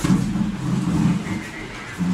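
Muffled low room noise with indistinct voices of people talking.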